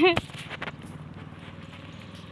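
A sharp knock just after a voice breaks off, then a few faint crunching footsteps on a gravelly dirt road over a steady low hum.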